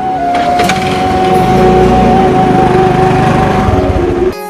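Honda scooter's small engine running as it pulls away, growing louder about a second in.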